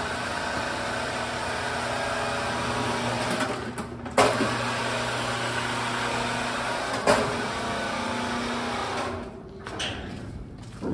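Electric chain hoist motor on a jib crane running with a steady hum as it hoists a sap tank on straps. The hum drops out just before a sharp clank about four seconds in, resumes, and a second clank comes about seven seconds in; the motor stops about nine seconds in.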